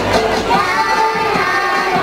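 Music with a child singing into a microphone.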